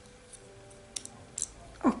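A few light, sharp clicks, two close together about a second in and another shortly after, from small clips being picked up and handled over quiet room tone.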